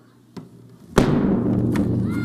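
A large bass drum struck once hard with a mallet about a second in, its deep boom ringing on and slowly fading, after a faint tap just before.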